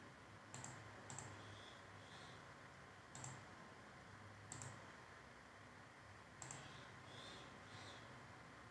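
Faint computer mouse clicks, about five, irregularly spaced, over near-silent room tone.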